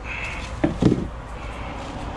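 Two short knocks from hands handling parts and a plastic bottle, about two-thirds of a second and just under a second in, over a steady low hum.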